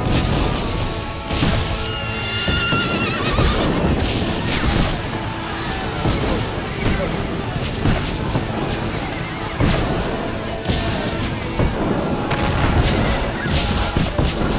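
Music mixed with battle sound effects: a dense din of crashes and bangs, with a horse whinnying about two to three seconds in.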